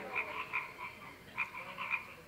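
Faint background animal calls: short, croak-like calls repeating several times a second at uneven spacing.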